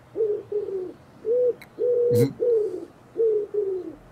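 Pigeon cooing imitated by blowing into cupped hands: seven short hooting notes in quick succession, some held level and some sliding down at the end.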